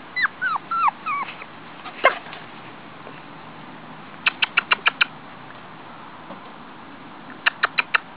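Puppies whimpering and yelping: four quick falling whines in the first second or so, a sharp yip about two seconds in, then fast runs of short high yips, six in a row near the middle and four more near the end.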